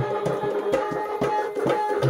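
A two-headed barrel hand drum (dholak or madal) played in a quick rhythm over held harmonium notes: the instrumental accompaniment of a bhajan.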